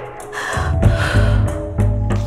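Dramatic background music score with deep bass notes, over a woman's distressed gasping breath in the first moments.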